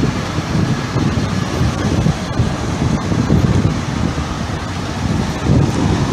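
Wind buffeting the microphone, a loud, uneven low rumble, over the noise of vehicles on the street.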